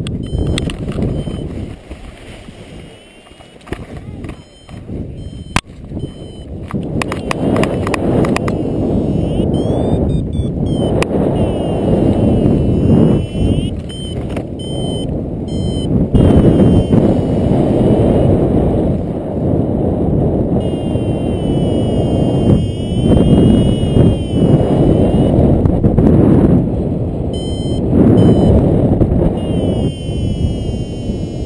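Wind buffeting the microphone of a paraglider in flight, louder from about six seconds in, with a paragliding variometer sounding short high beeps and wavering tones.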